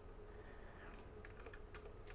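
Plastic string winder cranking the tuning peg of an Epiphone Les Paul to wind on a new string: faint, irregular clicking and ticking, more of it in the second half.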